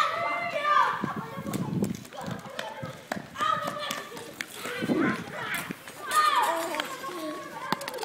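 Children's voices calling and chattering during play, with a few short knocks in between.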